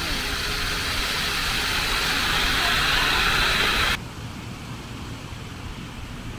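Water jets of a plaza fountain spraying and splashing onto the basin: a steady, bright hiss of falling water that grows slightly louder, then cuts off suddenly about four seconds in, leaving quieter background noise.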